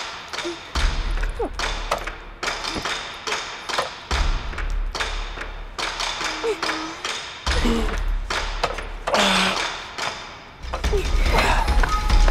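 Dramatic film score with a deep low rumble that drops out and returns several times, cut through by frequent sharp knocks and thuds. A few short voice sounds come through without words.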